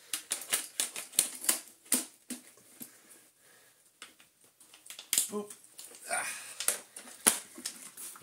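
Hard plastic clicking and knocking as the brush-roll cover is clipped back onto the underside of a Vorwerk VR300 robot vacuum and the robot is handled and turned upright. There is a quick run of clicks in the first two seconds and another about five to seven seconds in.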